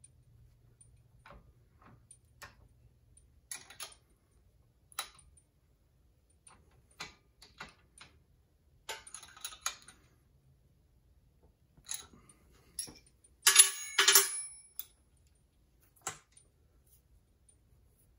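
Scattered metallic clicks and clinks from the steel parts of a Harbor Freight bead roller as the handle on its bearing-block bolt is turned and the upper shaft is moved. A louder burst of ringing metal clinks comes about two-thirds of the way through.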